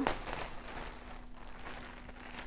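Clear plastic packaging bag being handled and crinkled: one sharp crackle at the start, then faint rustling.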